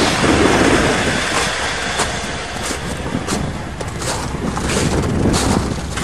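Carbureted Chevrolet 305 four-barrel V8 running at a cold idle just after a start, on a choke that sticks a little, with wind on the microphone. Regular crunches of footsteps in frozen snow, about one every two-thirds of a second.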